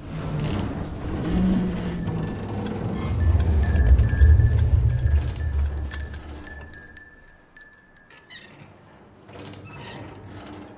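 Animated-film sound effects: a deep rumble swells up about three seconds in, with high, held chime-like ringing tones over it, and both fade away after about eight seconds.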